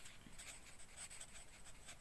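Faint scratching of a pencil writing a word by hand on a textbook page.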